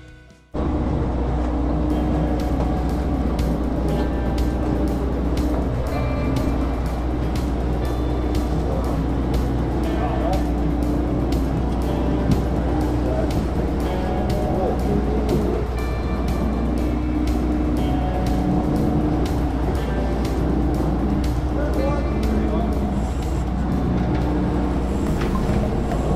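Music cuts off about half a second in, giving way to a sportfishing boat under way: its engines drone low and steady, with wind and rushing wake water on the open deck.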